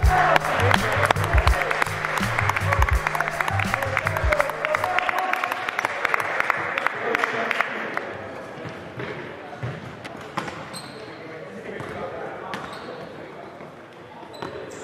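Voices shouting and talking in a reverberant indoor sports hall, with a futsal ball bouncing and knocking on the wooden floor. A music track with a pulsing bass beat runs under it and fades out about five seconds in, leaving the hall sounds quieter, with short shoe squeaks near the end.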